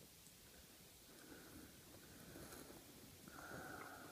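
Near silence: faint hiss with a couple of soft swells of noise, and no gunshot or steel impact.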